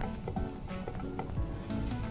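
Metal spatula stirring and mashing a soft potato and chickpea mixture in a non-stick frying pan while it sizzles, with scraping and a few dull knocks of the spatula on the pan.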